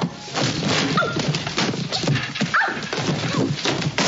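Film soundtrack with a string of short, high, squealing cries sliding up and down in pitch, mixed with knocks and scuffling.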